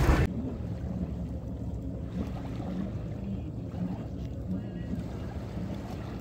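Low, steady outdoor wind rumble, with faint distant voices now and then.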